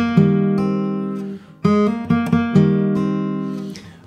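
A Fylde Falstaff steel-string acoustic guitar, capoed and fingerpicked: a short arpeggiated phrase played twice, its notes left to ring and fade away after each pass.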